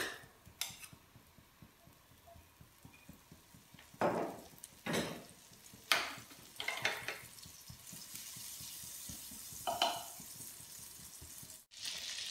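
Butter melting in a hot non-stick frying pan, a soft sizzle that builds in the second half. A few short knocks of utensils against the pan come around the middle.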